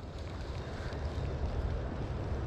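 Steady wind noise buffeting the microphone, a low even rumble and hiss.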